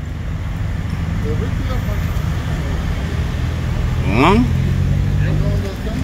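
Street traffic: a car engine running close by, its low hum growing louder through the clip. Faint voices of passers-by are heard, one rising briefly about four seconds in.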